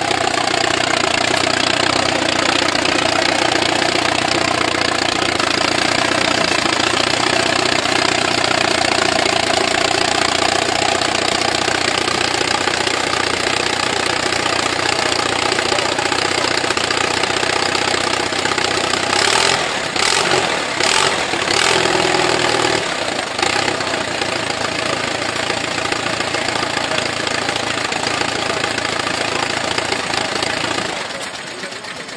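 Small vintage tractor engine running steadily, first as the tractor drives across grass and then idling once parked. A few sharp clicks come about two-thirds of the way through.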